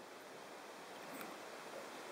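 Faint, steady hiss of room tone, with no distinct sound in it.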